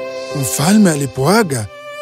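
Background music of steady held notes, with a narrator's voice coming in about half a second in and pausing briefly near the end.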